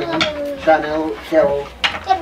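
A person's voice making drawn-out speech sounds, with a short sharp click near the end.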